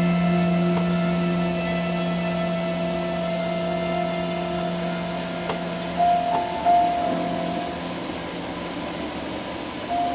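Background music of slow, long-held keyboard notes, with new notes coming in about six seconds in.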